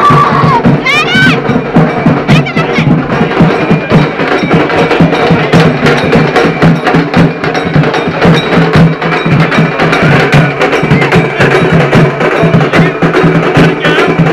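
Loud music with a fast, steady percussive beat.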